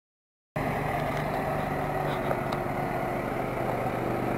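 Backhoe loader's diesel engine running steadily, cutting in suddenly about half a second in.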